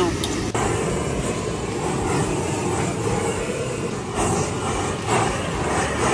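A handheld gas blowtorch flame runs steadily as it sears cubes of beef on a wire grill rack, with voices in the background. It starts about half a second in.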